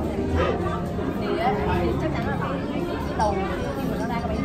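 Background chatter of several people talking at once, over a steady low hum.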